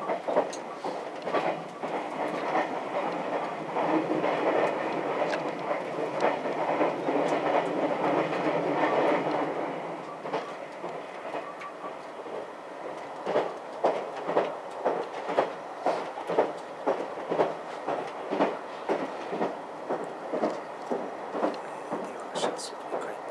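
Inside the front car of a JR West 283 series 'Ocean Arrow' electric express train running at speed. For about the first ten seconds there is a steady rumble, then the wheels click over rail joints about twice a second.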